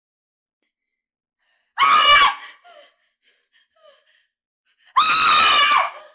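A person screaming twice in a high pitch: a short scream about two seconds in and a longer one near the end.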